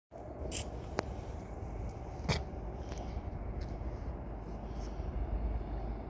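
Steady low outdoor rumble with a few sharp clicks, the clearest about a second in and another just after two seconds.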